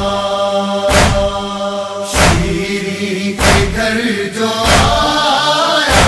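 A male reciter chanting a noha, an Urdu Muharram lament, in long held lines, with no instruments. Under the voice runs a steady beat of matam, chest-beating thuds, about every 1.2 seconds.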